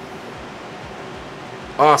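Steady background hiss like a fan or air conditioning running, with a man saying "awesome" near the end.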